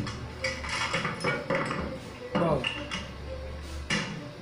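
Metal parts of an AK-74 assault rifle clicking and clacking as it is quickly field-stripped by hand, a string of sharp separate clacks.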